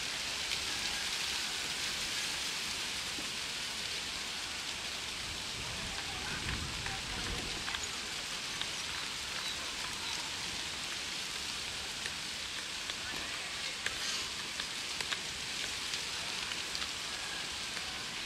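Steady hiss of water rushing through a PVC irrigation pipe outlet as its valve is handled, with a brief low rumble around six to eight seconds in.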